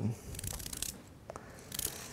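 Bird's beak turning knife shaving curved strips from a raw carrot: a crisp scraping cut lasting about half a second, then a shorter one near the end.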